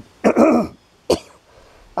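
A man clearing his throat, with a second short, sharp catch about a second in.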